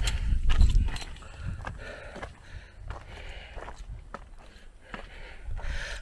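Footsteps on a gravel and dirt path, a series of uneven crunching steps, over a low rumble that is strongest in the first second.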